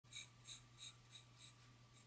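Graphite pencil drawing on sketchbook paper: faint, short strokes repeating about three times a second as a curved line is sketched.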